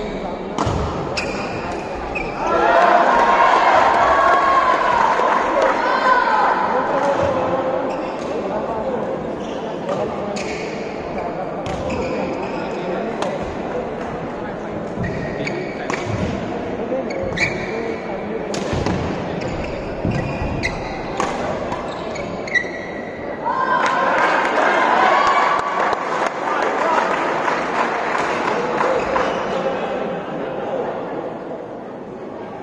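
Indoor badminton rally: sharp, separate racket strikes on the shuttlecock echoing in a large hall, over a constant murmur of spectators. The crowd's voices swell into shouting twice, a couple of seconds in and again a few seconds before the end.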